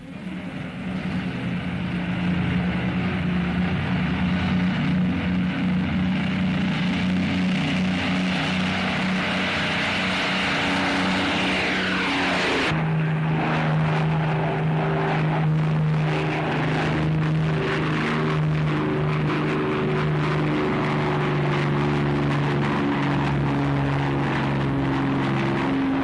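Avro Lancaster bomber's four piston engines running in a steady drone. A falling whine sweeps down just before the sound changes abruptly, about halfway through, to a lower engine note from the bomber in flight.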